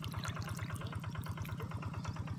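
A small engine running steadily at a distance, a rapid, even low throb, with faint scattered clicks and ticks of water over it.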